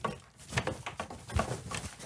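Strings of Christmas lights being shaken by hand, the plastic bulbs and wires rattling and clicking in quick irregular bursts. The lights have failed to come on.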